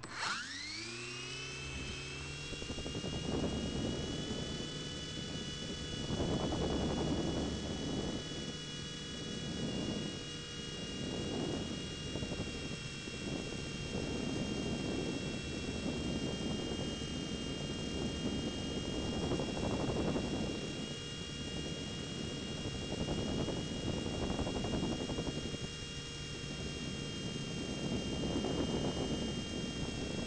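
Blade mCX2 coaxial micro RC helicopter's electric motors spinning up at the start with a quickly rising whine, then holding a steady high-pitched whine in flight. Rotor wash rushes over the microphone of the on-board keychain camera, swelling and fading every few seconds.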